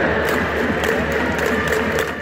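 Music playing in a large domed baseball stadium, mixed with the steady noise of a crowd of fans chanting.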